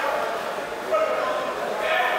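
Men's voices shouting and calling out in a large echoing concrete hall.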